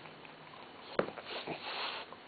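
French bulldog snuffling and breathing noisily through its nose while gnawing a chew stick, with a sharp click about halfway through and a smaller one soon after.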